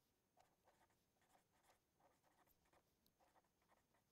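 Near silence with the very faint scratch of a pen writing on paper in short strokes.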